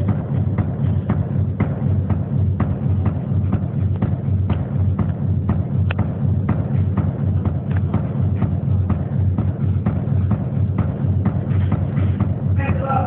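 Band music with a steady beat of sharp drum hits, about two to three a second, over a heavy, continuous bass.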